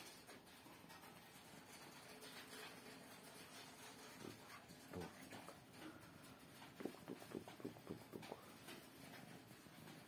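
A cat close to the microphone making a quick run of short soft sounds, about six a second for a second and a half, late in an otherwise near-silent stretch of faint room noise.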